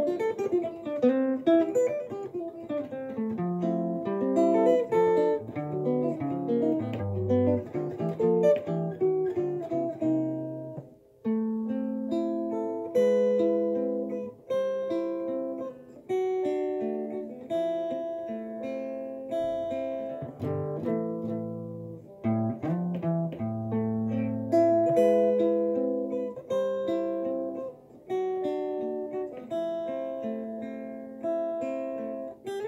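Archtop guitar fingerpicked with Alaska finger picks, playing a chord-melody passage. Quick runs of notes give way, after a short break about eleven seconds in, to more sustained chords.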